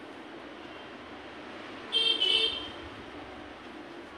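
A horn sounding two short honks in quick succession about two seconds in, over a steady background hiss.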